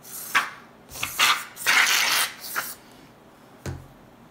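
Aerosol can of Kiwi sneaker foam cleaner dispensing foam in several short hissing bursts, the longest lasting about half a second around the middle. A low thump near the end.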